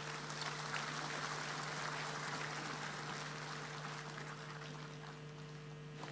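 An audience applauding faintly, the clapping dying down over a few seconds, with a steady electrical hum underneath.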